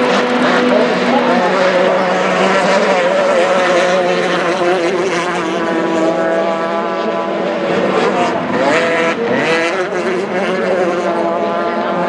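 Formula 350 racing boats' outboard engines running at high revs as the boats pass one after another, several engine pitches overlapping and shifting against each other. About nine seconds in, one engine's pitch dips and climbs again.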